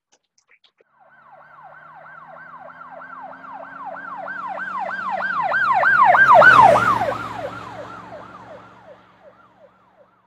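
Emergency vehicle siren in a fast yelp, about three sweeps a second. It grows louder to a peak about six and a half seconds in, then drops in pitch and fades away as the vehicle passes.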